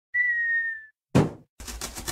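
Cartoon sound effects: a short whistle with a slight fall in pitch, then a single thump as a cardboard box lands, then a rapid rasping as a box-cutter blade slices through the box's tape.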